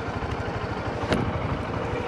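Honda CB125F's single-cylinder four-stroke engine running at low revs with a steady, even pulse as the bike pulls slowly across the road into a turn. One short click comes about a second in.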